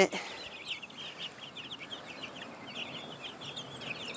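A flock of young meat and egg-layer chicks cheeping softly: many short, high peeps overlapping throughout.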